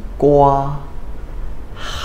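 Speech only: a man's voice pronouncing the Mandarin word for cantaloupe, 哈密瓜 (hā mì guā). One held syllable at a steady pitch, a short pause, then a breathy 'h' as the word starts again near the end.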